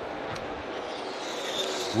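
NASCAR Cup stock cars' V8 engines droning on the track as broadcast track sound, a steady drone that grows slightly louder near the end.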